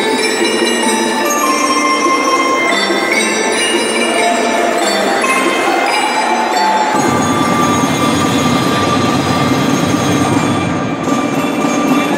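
Youth percussion ensemble playing mallet percussion (marimba, vibraphone and bells) in ringing, bell-like pitched notes. About seven seconds in, a fuller, lower layer of percussion joins and the music thickens.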